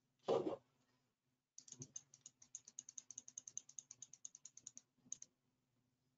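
Computer mouse scroll wheel clicking in a rapid, even run, about nine light clicks a second for some three seconds, as a document is scrolled down, with a couple more clicks after a pause. A short, louder noise comes just before, about a third of a second in.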